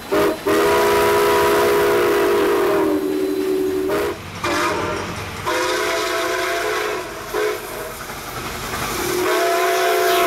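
Steam whistle of Canadian Pacific Hudson 4-6-4 locomotive 2816 blowing a series of blasts, several notes sounding together. The first blast is long, about three and a half seconds; shorter ones follow and fade, and another begins near the end.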